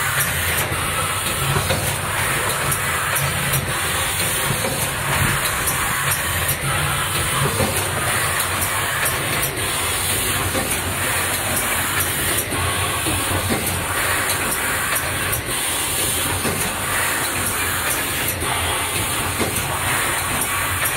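Automatic case-making machine for wine box covers running: a steady mechanical hiss and low hum, with a sharp clack every two to three seconds as it cycles.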